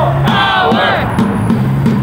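Protest chant led through a megaphone: a loud amplified voice shouts a line, with other voices chanting under it.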